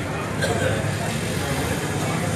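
An engine running steadily at idle, a constant low hum, with people talking over it.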